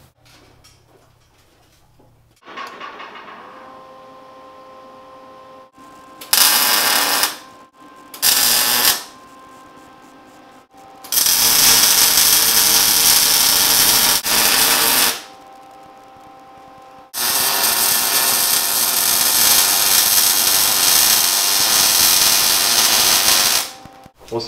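MIG welder arc crackling as steel weld bungs are welded solid onto a tie rod tube: two short runs of about a second each, then two long beads of about four and six seconds. A quieter steady hum fills the gaps between welds.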